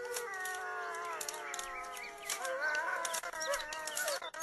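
A rooster crowing: two long calls, one after the other, the second starting a little past the middle and wavering more than the first.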